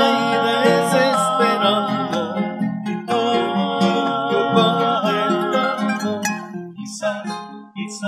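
Trio bolero: male voices singing long notes with vibrato over plucked acoustic guitars and an acoustic bass guitar. The singing breaks briefly about three seconds in and stops about six seconds in, leaving plucked guitar notes.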